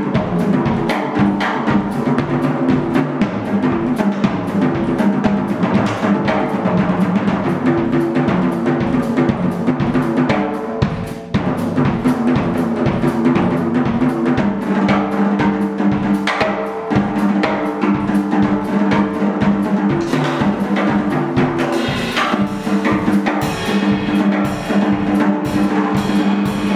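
A jazz drummer plays busily on a Gretsch drum kit: snare, bass drum and cymbals. Underneath are sustained electric-guitar chords. The music dips briefly about eleven seconds in.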